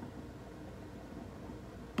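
Rowenta Perfect Steam generator's base unit boiling its water as it heats up to steam temperature: a faint, steady low rumble and hiss.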